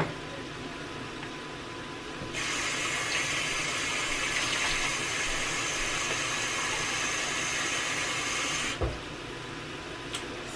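Kitchen tap running water into a small glass Pyrex bowl: a steady rush that starts about two seconds in and lasts some six seconds, then stops suddenly with a thump as the tap is shut off.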